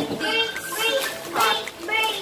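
A young child's high-pitched voice in short bursts of chatter and squeals, with wrapping paper rustling and tearing as a gift box is unwrapped.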